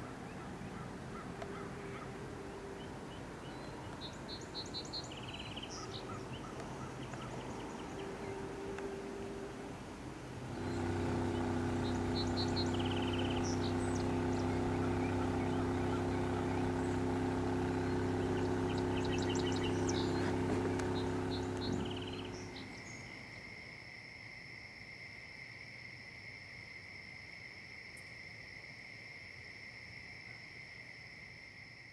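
Birds chirping over faint open-air ambience. About ten seconds in, a motorboat engine's steady drone cuts in and runs for about twelve seconds, then stops abruptly and gives way to insects calling in a steady, high, two-pitched trill.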